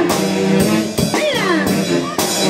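Live band playing upbeat carnaval ayacuchano dance music with brass and drums, with a few sliding notes in the melody.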